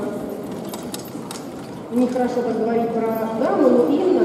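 A person's voice, quieter at first, then holding long notes from about halfway through, with a rising glide near the end.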